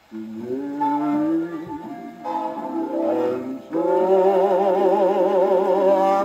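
A 1949 Mercury 78 rpm shellac record of a big-band orchestra playing on an acoustic phonograph. The music comes in right at the start, and from about two-thirds in it settles into long held notes with a strong wavering vibrato.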